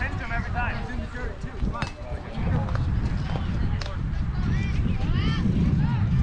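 Several high-pitched children's voices calling and chattering, with wind rumbling on the microphone.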